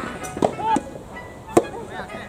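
Soft tennis rackets striking the rubber ball during a rally: two sharp hits about a second apart, the second louder, over background music and voices.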